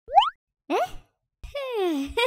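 Cartoon sound effect: a quick rising pitch sweep, the last of a run repeating about once a second. It is followed by a falling voice-like glide and then a longer, slower 'oooh' that slides down in pitch near the end.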